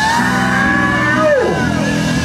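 Live rock band with electric and acoustic guitars, keyboard and drums playing a held chord. A long held, shouted vocal note rides over it and slides down about one and a half seconds in, answering a call-and-response count-in.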